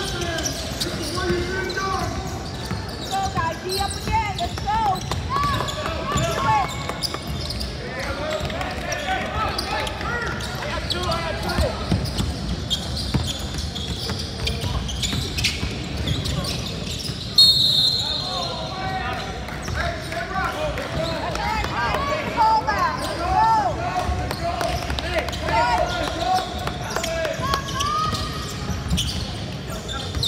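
Basketball game on a hardwood gym floor: a ball dribbling, sneakers squeaking and players' voices, with one short referee's whistle blast a little past halfway, the loudest sound.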